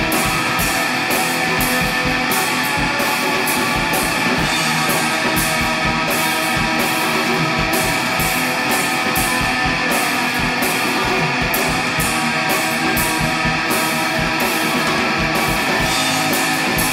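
Shoegaze rock demo: a dense wall of distorted electric guitars over a drum kit, with cymbals struck in a steady beat of about three a second.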